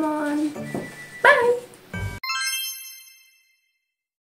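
A bright, tinkling chime sound effect, several high ringing tones struck together, that starts abruptly about two seconds in and fades out within about a second.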